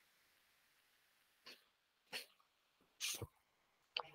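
A man coughing into his hand: three short coughs about a second and a half, two and three seconds in, the last one longest and loudest, in an otherwise quiet room.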